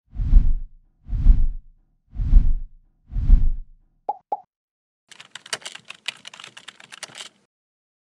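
Outro sound effects: four deep thuds about a second apart, then two quick pops, then a couple of seconds of rapid keyboard-typing clicks.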